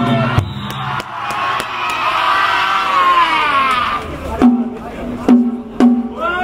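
Kishiwada danjiri float's festival band of drums and hand-struck gongs (kane), mixed with the voices of the rope-pullers calling out. Near the end the gongs ring out in three sharp strokes.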